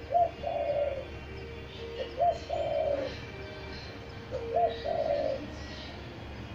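Spotted dove (pearl-necked dove) cooing: three calls about two seconds apart, each a short rising-and-falling coo followed at once by a longer one.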